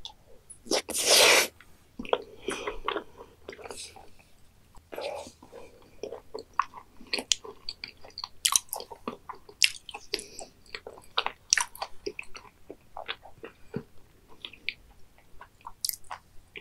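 Close-miked mouth sounds of a person eating raw beef liver: a loud burst of noise about a second in as the piece goes into the mouth, then soft, wet, irregular chewing clicks and smacks.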